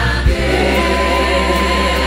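Church choir singing a slow gospel worship song with held notes over steady low instrumental accompaniment.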